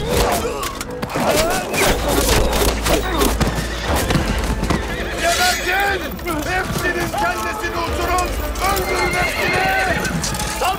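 Horses neighing and hooves clattering amid men's shouts, with sharp knocks through the whole stretch; the shouts and calls come thick and repeated in the second half.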